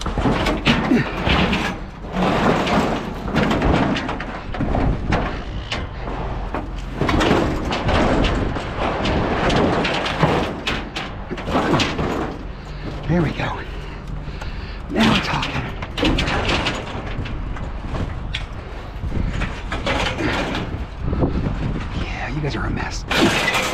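Scrap metal being unloaded by hand: sheet-metal panels and other pieces clanking and banging against each other and the truck bed as they are pulled out and dropped, a long run of knocks and clatters.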